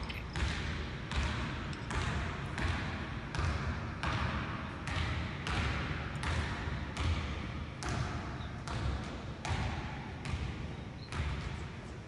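A basketball being dribbled on a hardwood gym floor, a steady bounce about three times every two seconds, each bounce echoing through the large hall.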